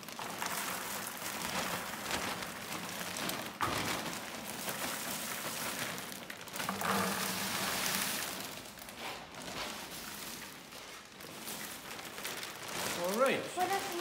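Popped popcorn pouring out of a plastic bag into plastic five-gallon pails: a dry rustling patter with crinkling of the bag, easing off before a voice starts near the end.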